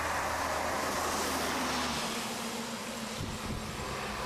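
City bus driving past close by on a wet road: engine running and tyres hissing, loudest about a second in and then fading.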